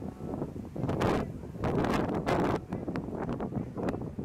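Wind blowing across the microphone in uneven gusts, a noisy rush that swells and fades several times.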